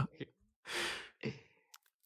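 A short, breathy laugh, mostly exhaled air, followed by a softer second breath. A faint click comes near the end.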